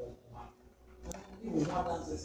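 A man's voice calling out in prayer with no clear words, loudest in the second half, over a low steady hum.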